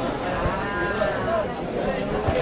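A long, drawn-out shout from a person at the football pitch, rising and then falling in pitch, from about half a second in to about a second and a half in, over scattered voices calling across the field.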